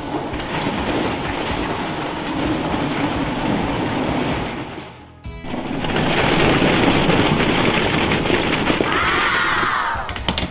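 Hundreds of hollow plastic ball-pit balls pouring out of a cardboard box and clattering down stairs, a dense rapid rattle. It drops away briefly about halfway through, then a second pour starts. Music plays underneath.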